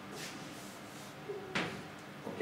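Chalk on a blackboard: a faint scratch of writing, then one sharp tap against the board about one and a half seconds in.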